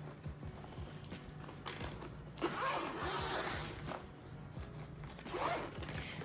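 Zipper being pulled open around a fabric-covered makeup case: one long rasping zip from about two and a half seconds in to nearly four seconds.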